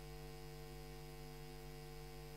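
Faint, steady electrical mains hum, a low buzz with many evenly spaced overtones, from the council chamber's sound system while the microphone is switched off.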